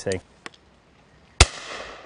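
A single shotgun shot about one and a half seconds in: one sharp crack, with its echo dying away over the next second.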